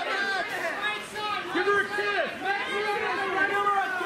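Several voices talking and calling out over one another, a steady babble of chatter with no single voice clear.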